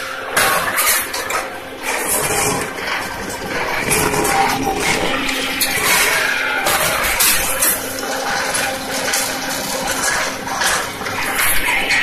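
Fully automatic paper dona making machine running: a steady hum under a continuous hiss, with irregular clatter as the die presses the paper into bowls.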